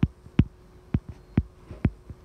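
A series of light, sharp taps, about three a second, over a faint steady hum.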